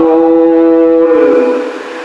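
A man's voice chanting in the melodic style of sermon recitation, holding one steady note for about a second, then fading away.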